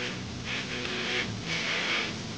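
Band music with a steady beat, a song played with keyboard, guitar and drums.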